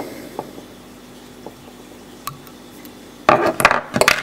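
Small metal fly-tying scissors trimming the tying thread at the hook eye, with a few faint clicks, then a short clatter of sharp metallic clicks about three seconds in as the tools are handled and set down.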